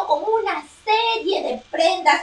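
Speech only: a high, child-like voice talking in short phrases.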